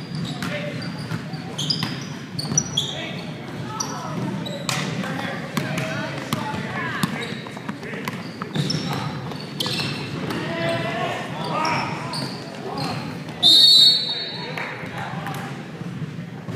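Basketball game on a hardwood gym floor: the ball bouncing in repeated sharp thuds, short high sneaker squeaks and players' voices calling out. Near the end a referee's whistle sounds once for about half a second, the loudest sound.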